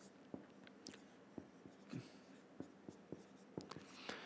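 Faint short strokes and taps of a marker pen on a whiteboard as words are written, a dozen or so small scattered sounds.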